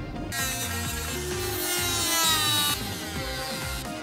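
Dremel rotary tool running and grinding into a plastic skeleton arm, its high whine wavering in pitch, over background music; the tool stops suddenly just under three seconds in.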